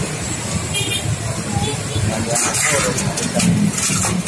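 A steady low engine rumble of a road vehicle running, with a few short clicks and scrapes of a plastic fuel pump holder being handled and set into a metal bowl.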